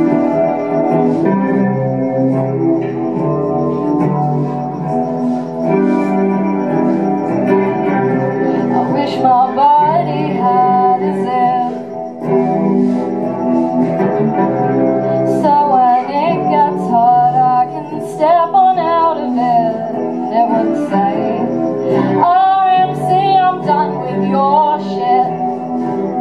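Solo electric guitar strumming a song through an amplifier, live in a small room. A woman's singing voice comes in over it about nine seconds in and carries on in phrases.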